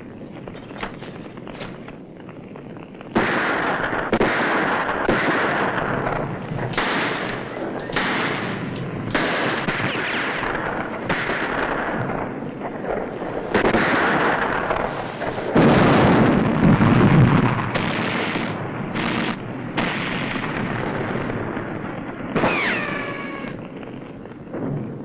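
Film battle gunfire: after a few quieter seconds, repeated bursts of automatic fire from a Thompson submachine gun and other weapons begin about three seconds in and go on through the rest. A heavier blast, deep and the loudest sound of all, comes a little past the middle.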